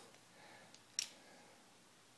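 A single short, sharp click about a second in as the microphone is fitted into its stand mount by hand, over faint handling noise and room tone.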